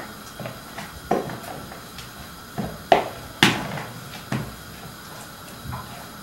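Wooden spoon stirring water-soaked bulgur in a plastic bowl, knocking against the bowl about six times at uneven intervals.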